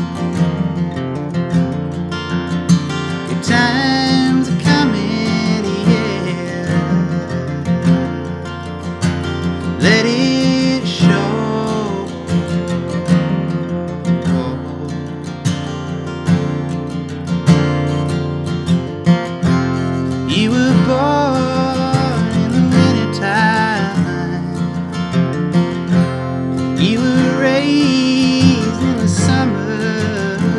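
Steel-string acoustic guitar, capoed, strummed and picked steadily in a live solo performance, with a man's wordless singing coming in over it at several points.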